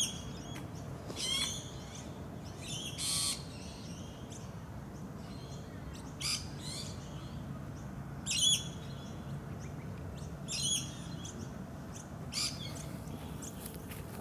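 Birds calling: short high chirping calls, repeated about every two seconds, over a steady low background rumble.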